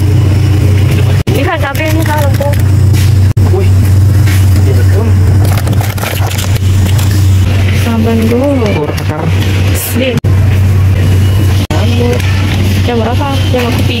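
A loud, steady low hum runs throughout, with indistinct background voices coming and going over it. The sound cuts out sharply for an instant a few times.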